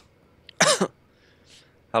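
A pause in a men's conversation, broken about half a second in by one short vocal sound from a man, a quarter-second utterance falling in pitch, with a faint breath near the end.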